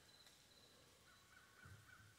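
Near silence, with a faint run of about five short, quick, evenly spaced bird calls in the second half.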